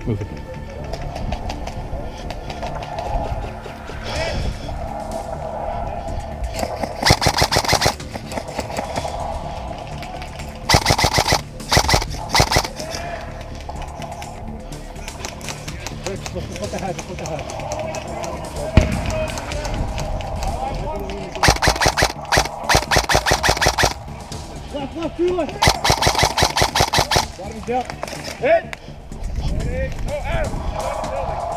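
Airsoft electric guns firing full-auto, about five bursts of rapid clicking snaps, each lasting around a second, with background music running underneath.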